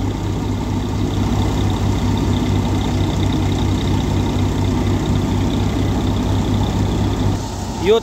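Tractor diesel engine running steadily while threshing mustard, with a pulsing low drone. The sound drops a little just before the end.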